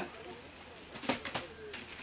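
A bird cooing faintly in the background, with a few light clicks about a second in, such as a cardboard box being handled.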